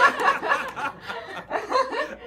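Two women laughing, loudest in the first half second and easing off after.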